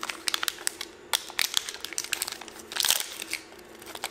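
Plastic packaging crinkling and crackling in the hands as a small flight-controller package is opened, in irregular bursts with a louder flurry about three seconds in.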